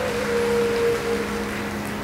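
Large audience applauding, an even rush of clapping, with a sustained musical note held underneath.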